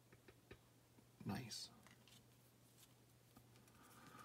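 Near silence with a few faint clicks from trading cards being handled, and a brief murmured vocal sound about a second in.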